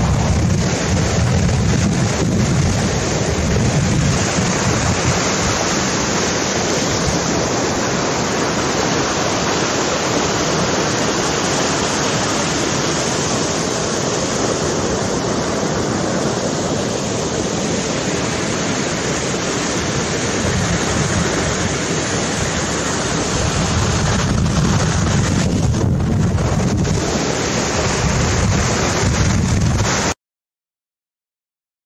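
A steady, loud rush of water with a deep rumble underneath, swelling slightly near the end.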